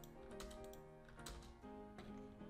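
A few faint computer keyboard key clicks over quiet background music.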